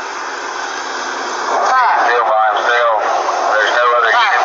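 Body-camera audio of a steady rush of roadside traffic noise, with voices talking indistinctly from about a second and a half in.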